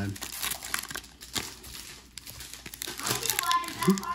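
Foil trading-card pack wrappers crinkling in short, irregular crackles as they are pulled open by hand. A voice is heard briefly near the end.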